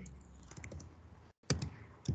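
A few faint keystrokes on a computer keyboard, including the Tab key for command completion, with one sharper key press about a second and a half in.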